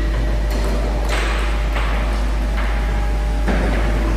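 A table tennis ball clicking off paddles and the table in a slow, uneven rally, about five light hits, over a steady low hum.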